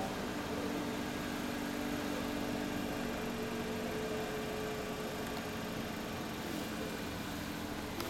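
Motorcycle engine idling steadily, with an even low hum that barely changes in pitch.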